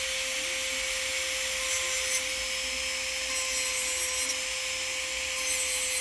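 Electric manicure drill (e-file) running at a steady, high whine, its metal bit grinding natural-composite gel from the underside of a nail's free edge to level it.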